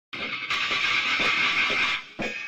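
Intro of a lo-fi rock track: a dense wash of distorted noise, louder from about half a second in, with faint beats about four a second underneath. It cuts off abruptly at the end.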